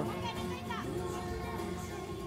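Music over an arena's PA with crowd voices in a large hall, the sustained notes slowly fading over the two seconds.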